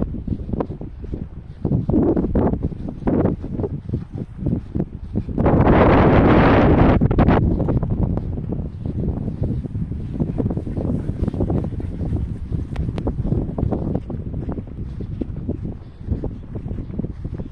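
Wind buffeting the microphone with an uneven rumble, and a stronger gust about five seconds in that lasts a couple of seconds.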